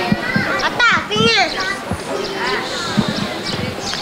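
Many young children chattering and calling out at once: a high-pitched babble of overlapping voices.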